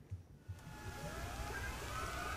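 Faint low thumps, then from about half a second in a rising electronic whine of several tones climbing together and slowly growing louder: a riser sound effect leading into a video transition.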